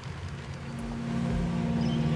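Opening of a project video's soundtrack: a low rumbling drone fading in and growing louder, with steady low tones joining about a second in.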